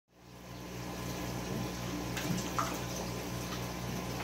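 Steady splashing of water from the pool pond's filter return, over a low steady electrical hum from the pump.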